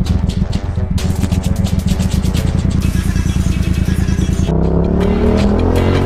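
Background music, then from about four and a half seconds in a motorcycle engine accelerating, its pitch rising steadily.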